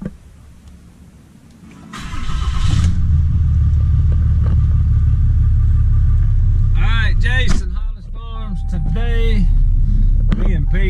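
A 2016 Dodge pickup's engine cranks on the starter for about a second, catches, and settles into a steady idle, heard from inside the cab.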